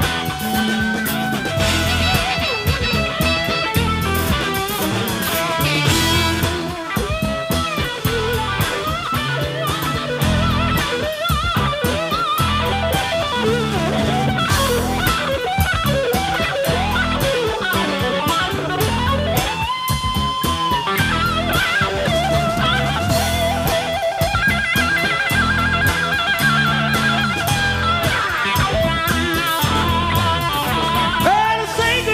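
Live blues-rock band playing an instrumental passage: an electric guitar lead with bending notes over a drum kit and a walking low bass line.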